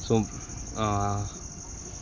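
Steady, evenly pulsing high chirring of crickets. A man's voice cuts in briefly just after the start and again with a drawn-out syllable around a second in.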